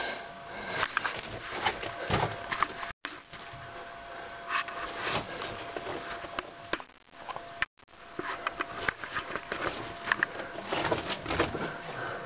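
Irregular scuffs, knocks and crunches of people moving on rock in a mine tunnel, footsteps mixed with camera handling, over a faint steady hum. The sound cuts out completely twice for a moment.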